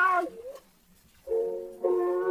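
A recorded song: a sung phrase trails off about half a second in, a brief pause follows, and from about a second and a quarter in, sustained notes with several steady overtones are held.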